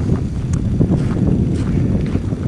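Wind buffeting the camera's microphone, a continuous low rumble.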